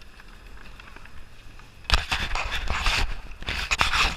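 Quiet for the first couple of seconds, then sudden rough scraping and crackling with sharp knocks as a glove or sleeve rubs against the helmet-mounted camera.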